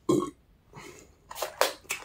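A short burp right at the start, followed by a few quieter clicks and smacks.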